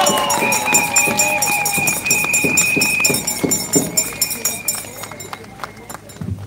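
Crowd clapping and cheering, with a long high whistle held through the first half. The applause dies down near the end.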